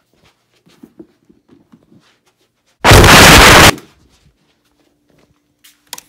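A few faint knocks and handling noises, then about three seconds in a sudden, extremely loud, distorted burst of noise lasting about a second that clips the recording and then cuts off.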